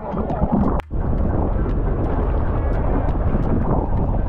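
Wind buffeting the microphone on a moving boat, a loud steady rush with heavy low rumble from the boat and water. The sound cuts out for a moment just before the first second, then carries on.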